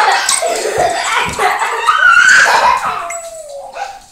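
Small dogs yipping and whining in play, a run of high cries that bend up and down, ending in one long falling whine near the end.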